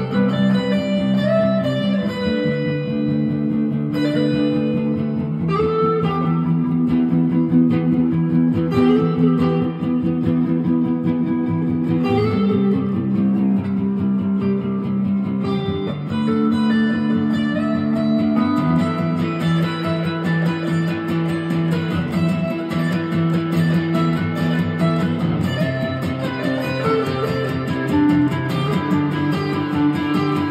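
Two guitars jamming together, an electric guitar and an acoustic-electric guitar, playing sustained chords under a melodic line whose notes slide up and down in pitch.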